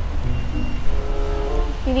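Low, steady rumble of a car engine idling close by, with faint conversation underneath.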